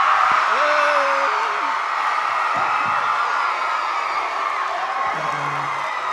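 Audience cheering and whooping, a steady roar of crowd noise with scattered individual shouts on top.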